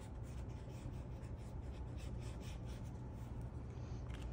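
Faint scratching of a felt-tip marker drawn across paper, tracing a line around a handwritten phrase.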